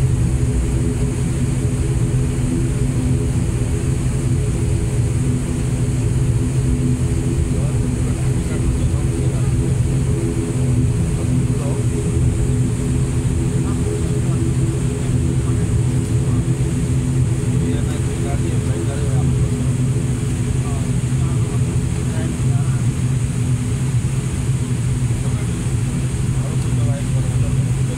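Turboprop engine and propeller heard from inside the airliner's cabin, running steadily at low power while the plane taxis after landing: a loud, even drone with a low hum and several steady tones.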